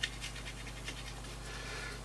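Faint scraping of a palette knife mixing paint and glazing medium on a palette: a string of soft, light scrapes and ticks, with a small tap right at the start.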